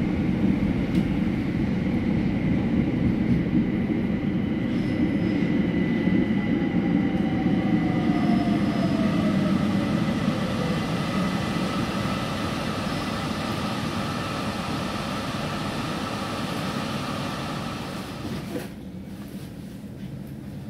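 Interior running noise of a London Overground Class 378 Electrostar electric multiple unit braking into a station: a steady wheel-and-track rumble with a whine from the traction motors that falls in pitch as the train slows. The sound grows quieter and drops to a low hum as the train comes to a stop near the end.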